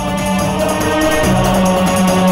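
Background music score: sustained choir-like voices over a held low drone, with a light, even rhythmic shimmer of jingling percussion.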